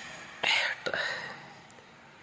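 A person's soft whisper or breathy voice: a short breathy hiss about half a second in and a weaker one just after a second, then fading to quiet room tone.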